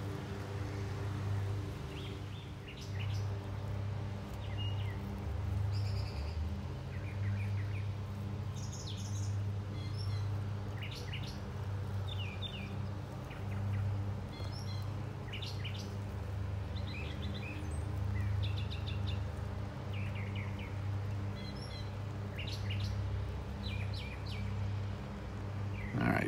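Outdoor birds calling in short, scattered chirps throughout, over a steady low hum that runs the whole time.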